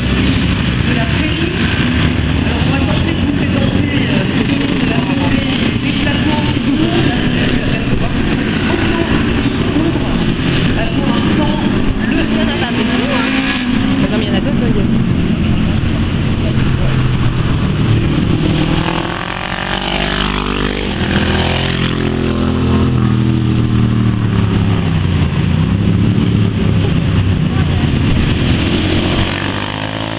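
Motorcycle engines running on a road-racing circuit, a continuous loud din. Between about two-thirds and three-quarters of the way through, engines audibly rise and fall in pitch as bikes accelerate and pass. Near the end another bike's engine rises in pitch as it approaches.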